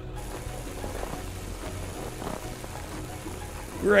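Cartoon sound effect of a snowplow pushing snow: a steady hiss, with soft background music underneath.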